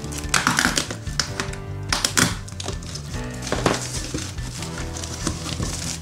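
Background music, with the crinkling, rustling and tearing of a cardboard parcel and its plastic wrapping being pulled open by hand in short irregular bursts.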